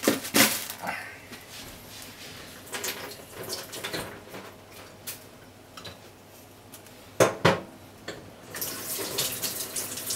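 Water in a pot of chicken pieces heating on a gas stove, bubbling unevenly as it comes up toward a simmer. A few sharp clicks and knocks come near the start and again at about seven seconds.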